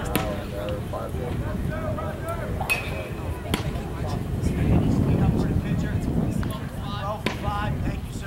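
Indistinct talking from several people over a steady low rumble, with a few sharp clicks.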